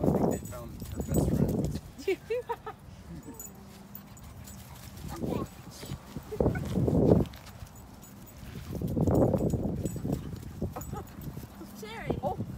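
Dogs growling at each other as they play-wrestle, in several rough bouts of about a second each, with a few short higher-pitched sounds about two seconds in.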